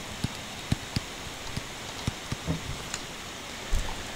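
Stylus tapping on a tablet screen while handwriting: a scattered handful of light clicks over a steady hiss, with a low thump near the end.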